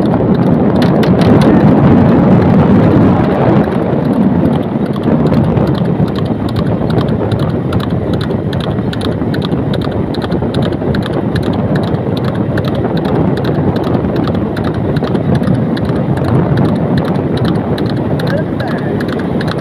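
A horse galloping on asphalt, pulling a rubber-tyred wooden cart at speed: a quick, even run of hoofbeats over loud, steady road and wind noise.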